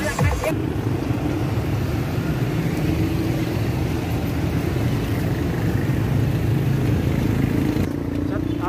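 A motor vehicle's engine running steadily, a continuous low rumble with a faint steady hum.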